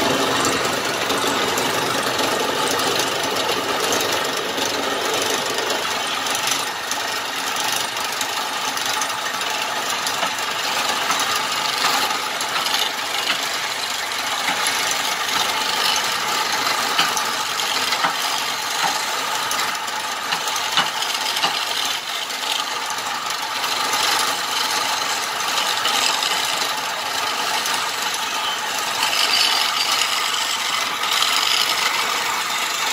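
Wood lathe running steadily while a hand-held turning chisel cuts a slender wooden spindle, throwing off shavings.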